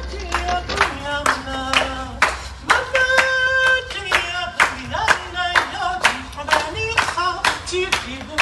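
Audience clapping along in a steady rhythm, with voices singing over the claps.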